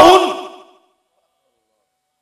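The end of a man's drawn-out, loud spoken word, dying away in a hall's echo within the first second, followed by dead silence.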